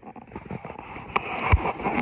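Coverall fabric rustling and crackling as the garment is handled close to the microphone, growing louder in the second half, with a low bump about one and a half seconds in.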